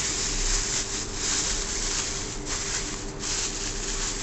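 Thin plastic bag and bubble wrap rustling and crinkling continuously as they are handled and pulled off a part.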